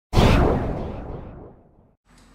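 Intro sound effect: a sudden whoosh-like hit that dies away over about a second and a half.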